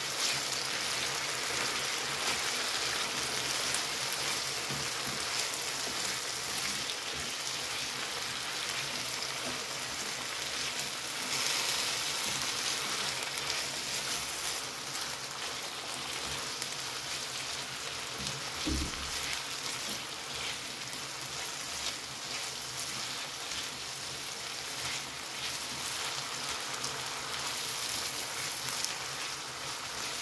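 Diced potatoes and chopped onion frying in oil in a shallow tagine pan: a steady sizzle with fine crackle throughout.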